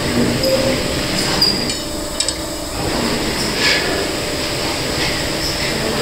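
Hydraulic stone splitter running steadily, with a faint whine over its noise, and a few short metallic clinks and scrapes of a steel bar on the steel table, about a second and a half, two seconds and three and a half seconds in.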